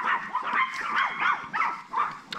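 Small dogs yapping in quick, high-pitched barks, several a second: an adult Chihuahua is barking at puppies that are pestering it.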